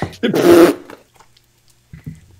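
A man's brief, loud laugh, about half a second long.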